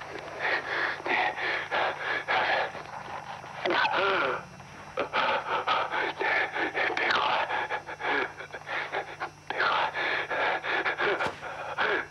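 A person's voice making short breathy sounds and a couple of drawn-out, wavering cries, over a low steady hum.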